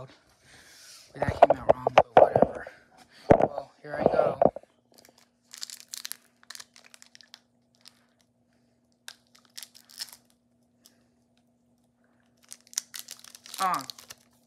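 A foil trading-card booster pack being torn open, with loud tearing and crinkling for the first few seconds, then scattered faint crinkles of the wrapper. A faint steady hum runs underneath from about a third of the way in.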